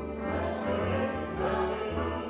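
Operatic voices singing in ensemble with an orchestra, the sung line 'Is there room at your inn this afternoon, morning,' over sustained low orchestral tones.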